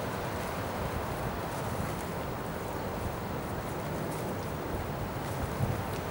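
Steady wind noise with nothing standing out.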